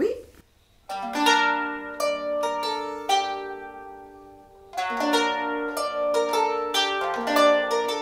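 Qanun, a trapezoidal plucked zither, played solo with finger plectra: the first notes come about a second in and are left to ring and die away, then a quicker run of plucked notes starts about five seconds in.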